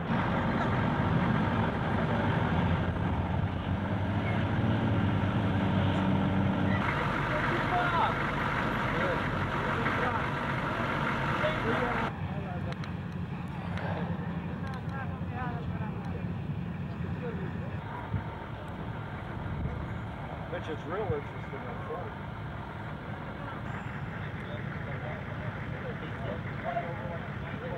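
Engines of tracked armoured personnel carriers running as they move, a steady low drone. About halfway through it cuts off to a quieter background with faint voices.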